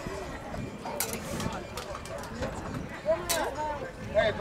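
Background voices of people talking and calling out across a football sideline, with a louder voice a little after three seconds in. Two short sharp knocks cut through, about one second in and again near the end.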